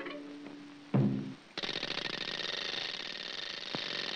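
Early-1930s cartoon soundtrack music: a short, deep string-bass note about a second in, then a dense, fast buzzing high passage that runs on past the end.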